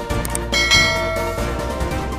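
A bell-like chime sound effect rings once, starting about half a second in and fading within about a second, over steady background music.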